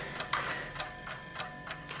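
A faint, steady ticking, about four light ticks a second, with a low steady hum underneath.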